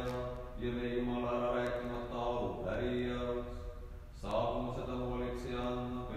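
A man's voice chanting Orthodox liturgical text on one level reciting pitch, holding long notes with brief breaks, one about four seconds in.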